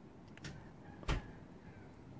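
Screwdriver turning the brass air-fuel mixture screw on a PWK-style carburetor as it is backed out to a set number of turns: quiet handling, with one short click about a second in.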